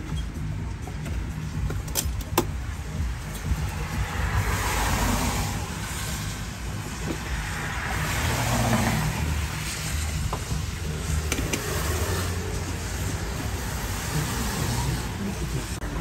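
Road traffic passing: a steady low rumble with cars swelling up and fading away, twice in the middle. Two sharp clicks come about two seconds in.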